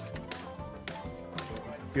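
Background music with steady held tones, crossed by about four or five sharp knocks from a hammer striking a cart wheel's iron tyre as it is driven onto the wooden rim.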